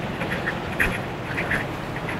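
Short animal calls, repeated irregularly several times a second, over a steady rushing background.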